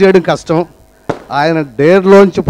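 A man speaking into a microphone over a PA system, in short phrases with a brief pause midway.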